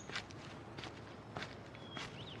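Soft footsteps at a steady walking pace, about one step every 0.6 seconds.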